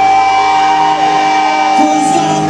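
Live hard rock band playing, with one long held note ringing over the music while the low bass and drums thin out in the second half.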